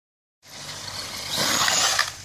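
Radio-controlled truck driving hard across gravel and dry leaves: tyre and motor noise starting about half a second in and growing louder as it speeds up.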